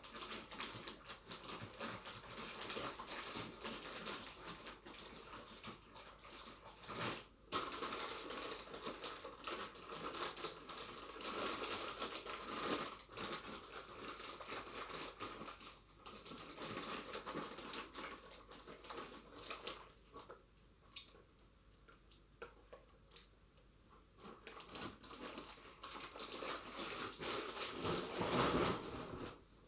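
European hornet chewing a lump of food close to the microphone: a dense, irregular crackling of its mandibles, in spells broken by brief pauses and a quieter stretch past the middle.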